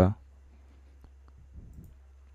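Quiet room with a steady low electrical hum and a couple of faint computer mouse clicks, one about a second in and another near the end.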